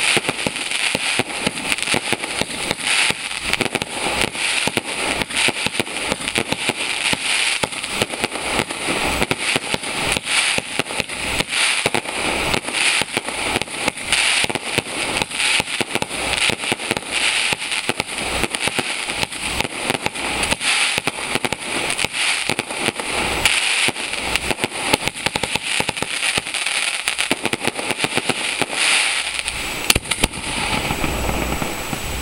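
Aerial fireworks display going off: a dense, unbroken crackle of many sharp pops each second as shells burst into glittering, crackling sparks, keeping up the same intensity without a pause.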